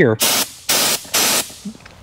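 SATA Jet 100 B RP gravity-feed spray gun triggered three times in quick succession, each pull a short hiss of compressed air spraying water; the second burst is the longest.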